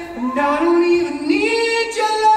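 Slow music of female voices singing long held notes in harmony, with no words in them, the notes gliding and stepping up in pitch about two-thirds of the way through.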